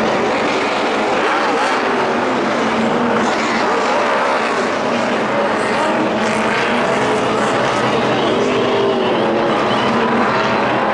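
NASCAR stock cars racing on track, a loud continuous wall of V8 engine noise with no letup.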